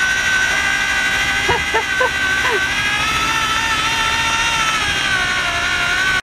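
Cordless drill running continuously through a right-angle drill attachment, a steady high whine, as it drives in a bolt fastening a stabilizer fin to an outboard motor.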